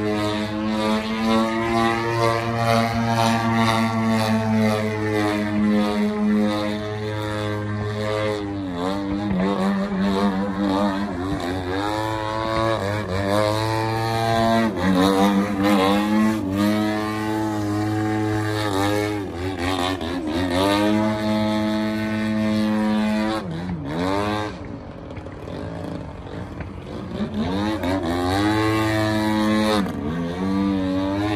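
Engine and propeller of a large radio-controlled aerobatic plane running in flight. The pitch drops sharply and climbs back about six times as the throttle is worked through manoeuvres, with a quieter stretch near the end.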